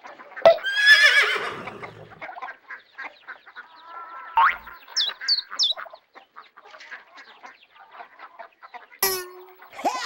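Farm-animal sound effects from a toy farmhouse: a loud wavering call about a second in, a rising call and then three short high chirps around the middle, and a knock near the end, over a patter of light clicks.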